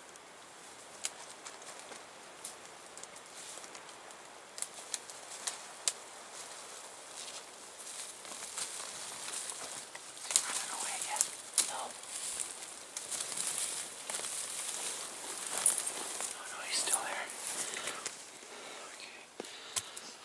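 Hushed whispering in bursts from about ten seconds in, with rustling and scattered sharp clicks of handling close to the microphone.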